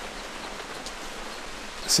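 Steady, even hiss of outdoor background noise, with a man's voice starting again right at the end.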